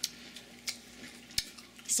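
Three short sharp clicks or taps, about two-thirds of a second apart, over a faint steady low hum.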